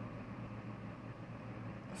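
Faint, steady low background hum with a little even hiss, like a running machine or appliance, between sentences of speech.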